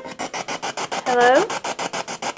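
Spirit box sweeping through radio stations: rapid choppy static pulsing about six or seven times a second, with a brief voice-like snatch of sound about a second in.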